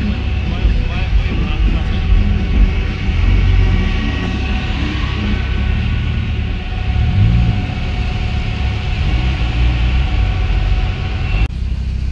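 Steady low engine rumble of cars in slow traffic, heard from inside a car, breaking off abruptly near the end.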